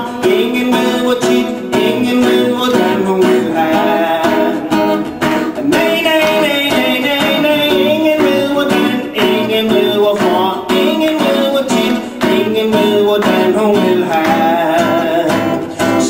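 A man singing while strumming a steel-string acoustic guitar.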